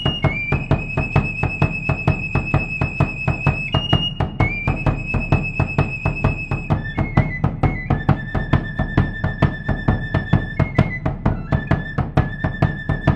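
Traditional carnival music for drum and flute. A high flute holds long notes, each about three seconds, over a steady, fast drum beat. The tune steps down to a lower held note about seven seconds in.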